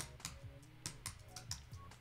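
A handful of irregular computer-keyboard key presses as keyboard shortcuts are tried, over faint background music.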